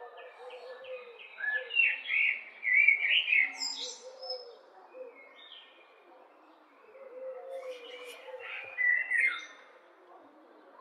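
Common blackbird singing: a loud run of song phrases about a second and a half in, and another short loud phrase near the end, with quieter song between.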